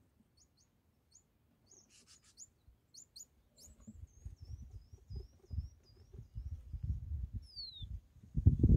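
Small birds chirping: short high calls in the first half, then a quick trill of repeated notes and a falling whistle near the end. A low rumbling noise sits beneath the second half.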